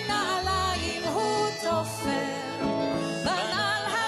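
A Hebrew song performed live: a singer's voice with vibrato over a band of piano, acoustic guitar, bass and drums playing a steady beat.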